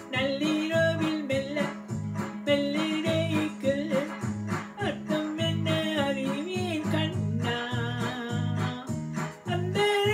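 Electronic keyboard music: a Tamil love song played on a Technics keyboard, with a steady beat and bass under a gliding melody line.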